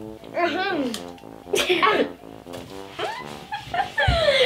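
Children squealing and shrieking in short gliding cries, the loudest at about half a second and a second and a half in, over light background music.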